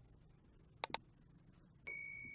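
Subscribe-button animation sound effect: a quick double mouse click a little under a second in, then another click and a bright bell ding near the end that keeps ringing.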